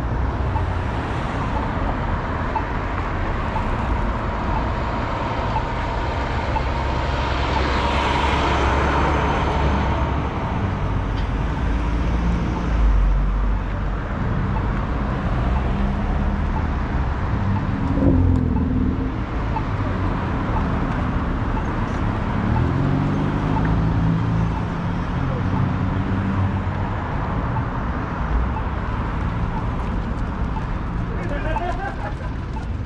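Road traffic passing through a city intersection: car and pickup truck engines and tyre noise. One vehicle passes close and loud about eight seconds in, and an engine note rises and falls later on.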